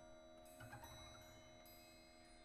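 Very quiet passage of contemporary chamber music: faint sustained tones with a bell-like ringing, and a soft low note entering about half a second in.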